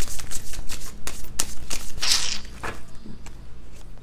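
A deck of tarot cards being shuffled by hand: a quick run of card-on-card flicks that thins out after about two and a half seconds.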